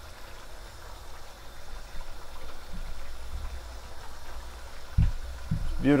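Chicken curry simmering in a pan, a steady soft bubbling, with a couple of dull thumps near the end as broccoli florets are dropped in.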